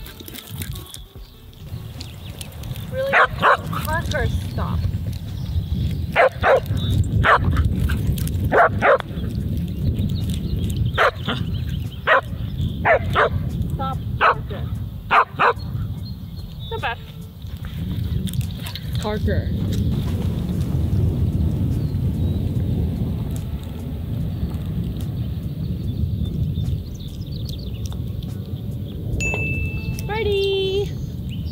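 A dog barking repeatedly: about a dozen short, sharp barks through the first half, over a steady low rumble.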